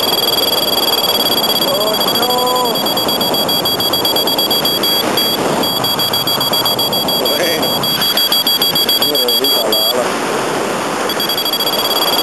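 Paraglider variometer sounding a high, steady, near-continuous beep, the tone a vario gives in a climb, over wind rushing across the microphone. The tone breaks off briefly about five seconds in and cuts out for about a second near the ten-second mark before coming back.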